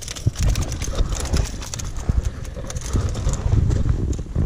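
Irregular soft thumps and knocks with rustling, from a just-landed speckled trout flopping on a muddy, grassy sand bank.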